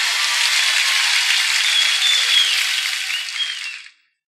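Studio audience applauding, fading out near the end.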